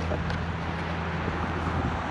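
Steady low hum of a running engine under wind noise on the microphone.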